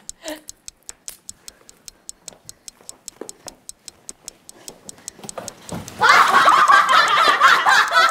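A ping-pong ball bouncing over and over on a paddle, a steady run of light clicks about five a second. About six seconds in, loud laughter and voices take over.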